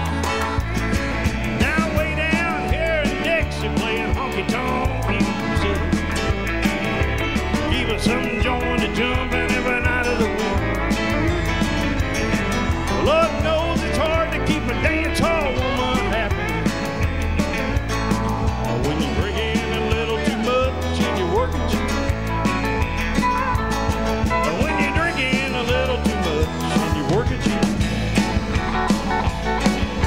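Live country band playing an instrumental break: an electric guitar lead with bent, wavering notes over bass and drums.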